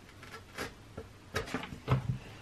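Hands handling paper and tape on a plastic X-Acto paper trimmer: a few light taps and rustles, the loudest near the end.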